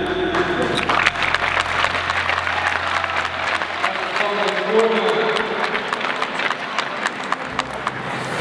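Audience applauding: dense, steady clapping from a crowd as a team is called up for its award.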